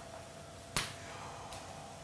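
Quiet room tone with a faint steady high hum, broken by one short, sharp click about three-quarters of a second in.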